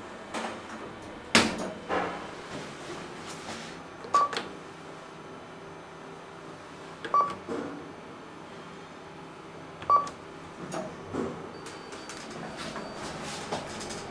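KONE elevator car riding with a steady low hum, giving three short high electronic beeps about three seconds apart. A sharp knock comes about a second in, with a few lighter clicks.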